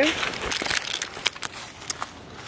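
Footsteps crunching through dry fallen leaves, with a quick run of irregular crackles.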